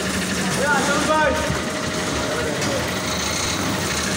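Bakery machinery running steadily with a mechanical hum. Voices call out briefly about a second in.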